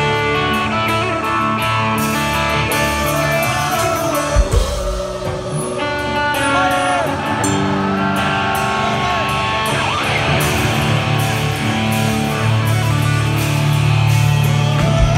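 Live hard rock band playing loud: electric guitars and bass guitar over drums and cymbals, with a voice singing held, wavering notes.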